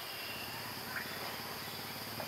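Outdoor insect chorus with a steady high drone, over a fast, even low pulsing trill. One short rising chirp comes about a second in.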